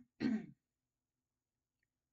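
A woman briefly clearing her throat.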